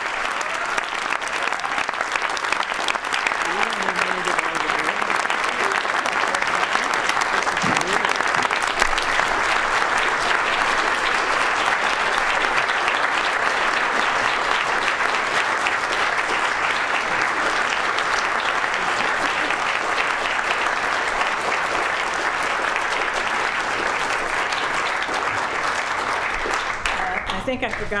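Audience applauding at length, a dense steady clapping that tails off near the end.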